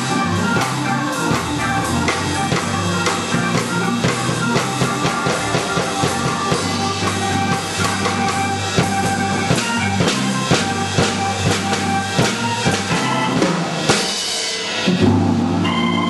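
Hammond organ, played through a Leslie speaker, playing a funky groove over a steady drum beat. Near the end the groove stops briefly and a held organ chord rings out.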